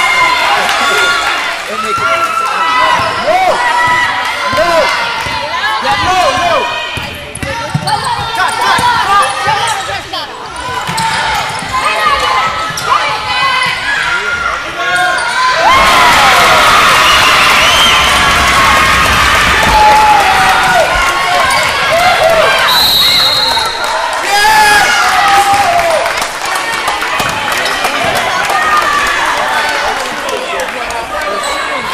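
Basketball game in a school gym: a ball bouncing on the hardwood court under the shouts and chatter of players and spectators. About halfway through, the crowd noise gets suddenly louder for several seconds, and a short high whistle blast follows a few seconds later.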